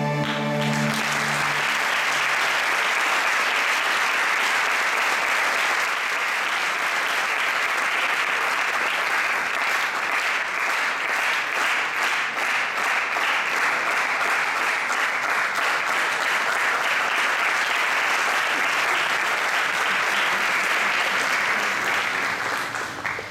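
Audience applause: the last note of the music stops within the first second, then an audience claps steadily for about twenty seconds, fading out right at the end.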